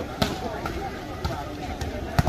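Volleyballs smacking off hands and bouncing on a hard outdoor court during a warm-up. There is one sharp hit about a quarter second in and a few lighter knocks after it, over the steady chatter of a large crowd.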